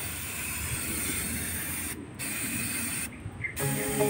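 Aerosol cleaner spraying onto an engine through a straw nozzle: a steady hiss, released in bursts, with a short break about two seconds in and another a little after three seconds. Music comes in near the end.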